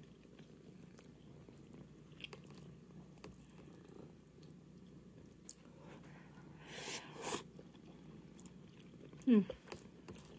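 Ramen noodles being slurped and chewed, with two short loud slurps about seven seconds in. A cat purring close to the microphone makes a steady low rumble underneath.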